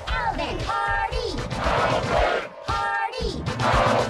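Cartoon film audio distorted by a pitch-shifting, chord-making effect: short shouted voices turned into stacked, chord-like tones, with crashing noise in between.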